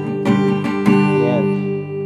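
Steel-string acoustic guitar strummed: a quick run of about five strums in the first second, then the last chord left ringing and fading.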